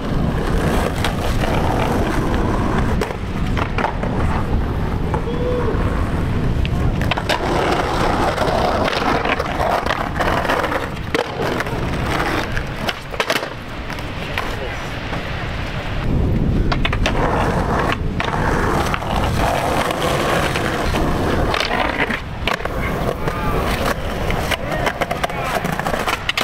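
Skateboards rolling over concrete and grinding along concrete curbs in slappy grinds: a steady low rumble of the wheels with repeated sharp clacks and knocks of the board.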